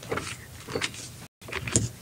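Handling noise at a lectern: papers and a report being gathered, rustling and knocking lightly near the podium microphone, with a louder bump near the end. The audio drops out completely for a moment a little past halfway.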